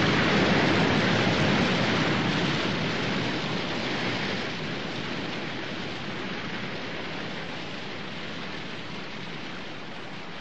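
Waterfall water rushing steadily into a pool with a cloud of spray, slowly fading away.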